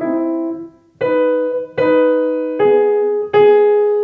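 C. Bechstein grand piano playing a slow run of double notes, five two-note strikes each left to ring briefly before the next. The upper voice is played loud and the lower very soft, a voicing exercise for practising double notes.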